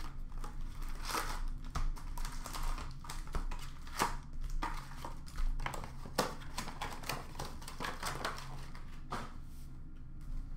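Crinkling and rustling of wrapped hockey card boxes and foil packs being handled and opened, with irregular clicks and taps as a blade slits the wrapping and boxes are set down.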